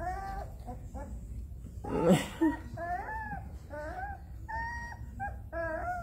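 Young puppies whimpering and squealing in a string of short, high, wavering calls, with one louder, harsher cry about two seconds in.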